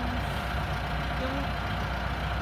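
A steady low mechanical rumble with a constant higher hum, unchanging throughout, with a faint voice now and then.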